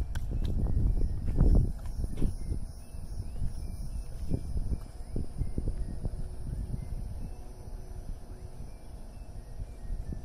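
Wind buffeting the microphone, an irregular low rumble that is strongest in the first two seconds, with faint bird chirps.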